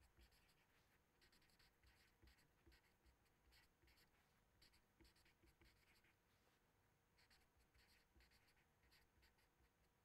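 Marker pen writing on paper: a string of very faint short scratching strokes, pausing briefly a little after the middle.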